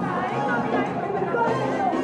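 Spanish rumba-style song playing through a PA, a singing voice with vibrato over a steady bass line, with crowd chatter under it.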